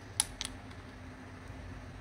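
Two light plastic clicks, about a quarter second apart, from handling a plastic glue bottle with a blue nozzle, followed by faint room tone.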